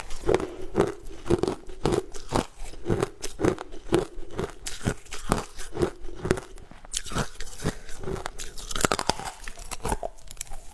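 Ice cubes being bitten and crunched close to the microphone, a sharp crunch about twice a second.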